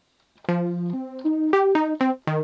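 Roland ZC1 ZEN-Core software synthesizer in Zenbeats on its default patch in mono legato mode, playing single sustained notes one at a time that step up and down in pitch. The notes start about half a second in after a brief silence.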